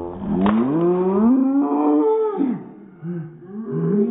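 A child's long, loud, drawn-out yell that rises in pitch, followed by a few shorter vocal sounds, with a short sharp click about half a second in.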